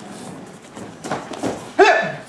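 Bare feet thudding and slapping on foam sparring mats and a kick striking a taekwondo body protector, with a loud, short yell near the end as one fighter goes down.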